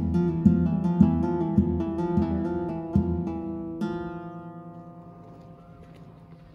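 Solo guitar music: plucked notes about twice a second, then a final chord about four seconds in that rings on and fades away.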